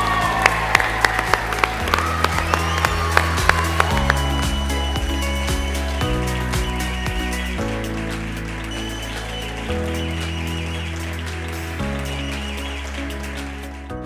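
Audience applause over music with a bass line that changes note every couple of seconds. The applause is sharpest in the first few seconds and thins out toward the end.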